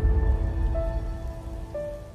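Logo intro sound: held musical tones over a heavy low rumble, the notes shifting a couple of times before the whole sound fades away near the end.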